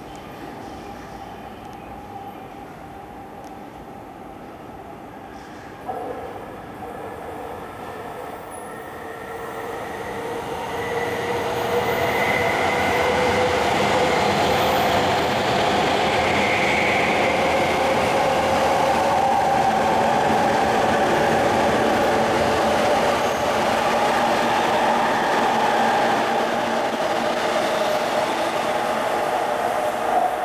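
JR East E231-1000 series electric train passing at speed while still accelerating: traction-motor whine over wheel and rail noise. There is a sharp knock about six seconds in, then the sound grows from about ten seconds in and holds loud and steady until near the end.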